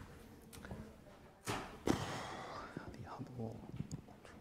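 Quiet, murmured voices with a sudden rustling thump about one and a half seconds in, the loudest moment.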